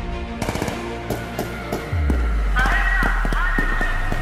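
Gunfire: a string of irregular shots over background music. About two seconds in, a low rumble sets in, and shouting voices join shortly after.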